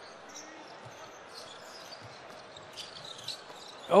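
Faint basketball arena sound: a basketball being dribbled on a hardwood court over low crowd murmur.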